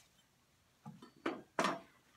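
Near silence, then a few short vocal sounds from a man starting about a second in.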